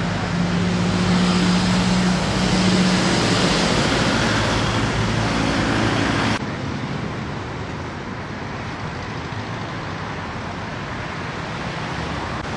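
A motor running steadily, a low hum over noise, which drops suddenly to a quieter, even noise about six seconds in.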